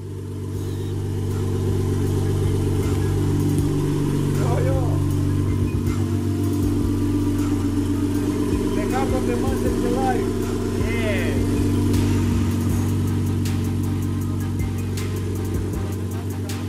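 Nissan Skyline R32 GT-R's twin-turbo RB26DETT straight-six, built with forged internals, running at a steady idle with no revving.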